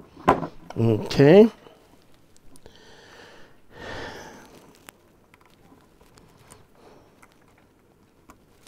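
A short mumbled vocal sound about a second in, then a couple of breaths and scattered faint clicks and rubs from fingers working a programming cable's plug into the side jack of a mobile radio.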